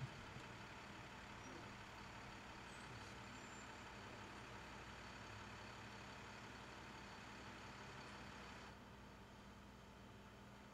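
Near silence: a faint steady hiss with a low hum, growing slightly quieter near the end.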